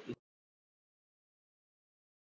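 Near silence: the tail of a spoken word cuts off just after the start, then complete silence with no room tone at all, as in a gap edited out of the recording.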